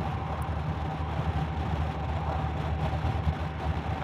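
Honda Gold Wing's flat-six engine running steadily at a gentle cruise, under a constant wash of wind and road noise.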